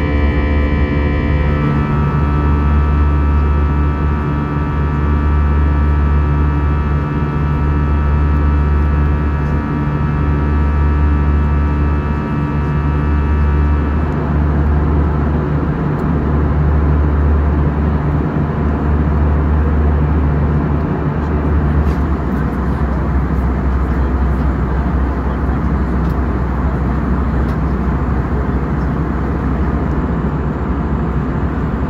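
Ambient music with long held tones, which stops about halfway through. It gives way to the steady rushing cabin noise of an Airbus A320 in flight, airflow and engine hum heard from a window seat.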